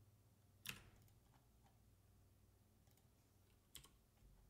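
Faint computer keyboard keystrokes over near silence: a few isolated key presses, the clearest about two-thirds of a second in and another near the end.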